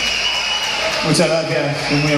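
Crowd noise at a live concert between songs, then from about a second in a man's voice over the PA, drawn out on one steady pitch.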